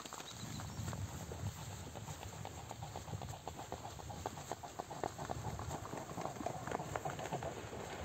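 A swan running along the water's surface to take off, its feet and wings slapping the water in a quick, rhythmic patter that grows toward the end. Wind rumbles on the microphone underneath.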